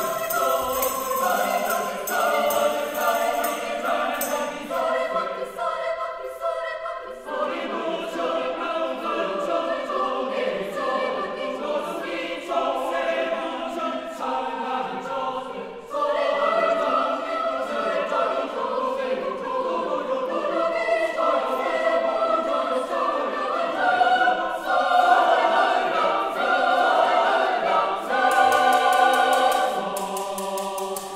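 Chamber choir singing a Korean choral piece a cappella, several voice parts holding close chords. There is a brief thinning about six seconds in and a cut-off with a fresh entry about halfway through, and the singing grows louder near the end.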